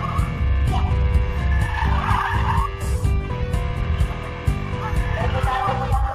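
A drifting Honda hatchback's tyres squealing on asphalt, in a short burst about two seconds in, over background music.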